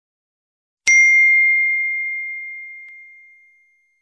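A single bell ding sound effect struck about a second in, ringing out as one clear high tone that fades away over about three seconds.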